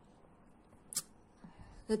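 A single short crinkle of a paper seed packet being turned over in the hands, about a second in, against otherwise quiet room tone.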